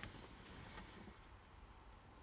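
Near silence: faint room tone inside a parked vehicle's cabin.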